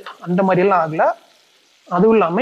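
A man speaking in Tamil for about a second, then a pause, then speaking again near the end, with a faint sizzle of okra frying in oil in a steel pot beneath and between the words.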